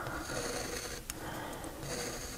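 Quiet room noise with faint breathing and one small click about a second in.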